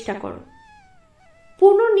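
A woman's voice ends a phrase in Bengali. Then comes about a second of a faint, thin high tone that wavers and slowly falls, and her speech starts again near the end.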